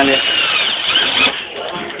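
Ryobi drill/driver driving a screw into wood. Its motor whine rises and falls in pitch for about the first second, then runs lower and steadier.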